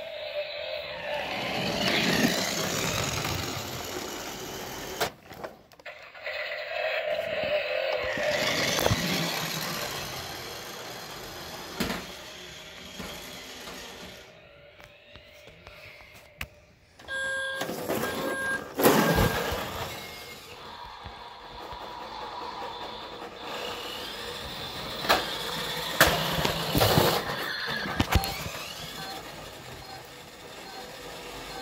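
Battery-powered toy cars playing their electronic vehicle sound effects, engine-like noises from small speakers, with a short run of steady beeps about two-thirds of the way through and several sharp clicks and knocks.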